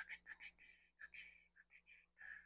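Faint brush strokes of gouache on sketchbook paper: a run of short, soft scratches, a few a second, as the brush is dragged back and forth.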